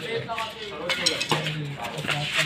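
Badminton racket striking a shuttlecock: a sharp hit with a short metallic ring about halfway through, amid men's voices.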